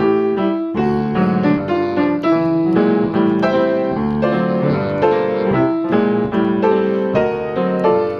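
Acoustic grand piano played solo in jazz style, with both hands sounding chords and moving lines. A brief gap comes under a second in, then the playing continues.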